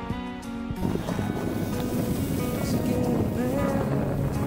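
Background music, and from about a second in a loud rush of wind noise on the microphone and skis sliding on snow during a fast downhill ski run, running over the music.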